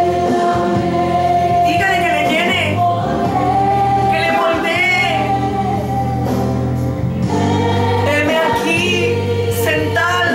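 Gospel worship song: a sung melody with wide vibrato over sustained keyboard chords and a steady bass, in a few long, drawn-out phrases.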